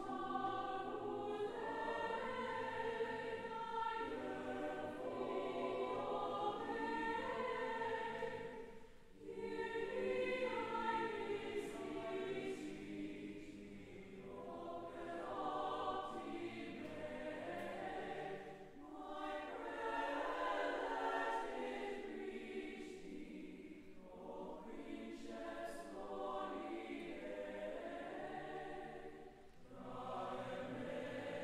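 Mixed choir singing in long sustained phrases, with brief breaks between phrases about every ten seconds.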